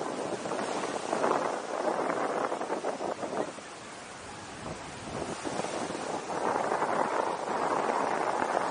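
Wind buffeting the microphone over the wash of surf on a beach, rising and falling, with a quieter lull about halfway through.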